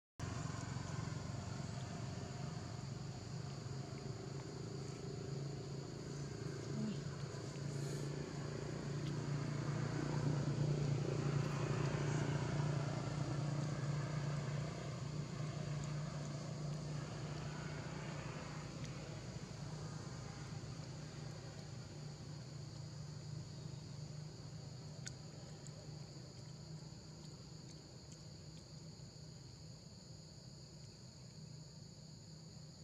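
Engine of a passing motorbike, rising to its loudest about ten to fourteen seconds in, then slowly fading away, over a steady high buzz of insects.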